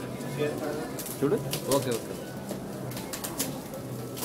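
Gold metallic-foil gift wrap crinkling and tearing as several boxes are unwrapped at once, in short scattered crackles, over faint murmuring voices and a steady low hum.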